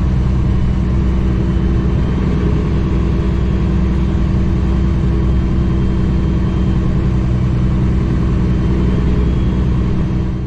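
A 2008 Kenworth W900L's Cummins ISX diesel engine running steadily as the truck drives along, a constant low drone with road noise and no change in revs.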